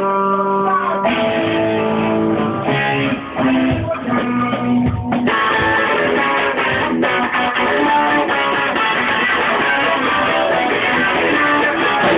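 Rock band playing live: guitars hold ringing, sustained chords for about five seconds, then the full band comes in loud and keeps playing.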